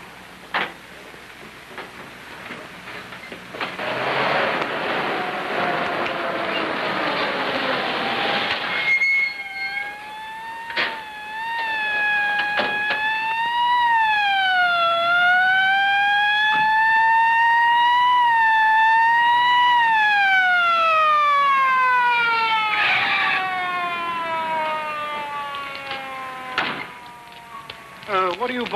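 A siren wailing, its pitch rising and falling several times and then winding down slowly near the end, after a few seconds of noisy rushing. A few sharp clicks break in along the way.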